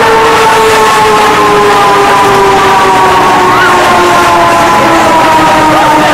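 Euro-Sat indoor roller coaster heard from on board the moving train: a loud, steady rushing rumble with a whine that slowly falls in pitch.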